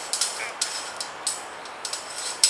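A steel welded-wire cattle panel being handled and flexed, giving a run of irregular sharp clicks and rattles.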